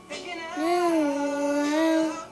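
A child singing one long held note that starts about half a second in, rising and falling slightly in pitch before settling, over a faint backing track.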